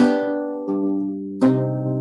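Renaissance lute plucked three times, about two-thirds of a second apart, the last a low bass note. Each note is left to ring on and fade rather than being damped.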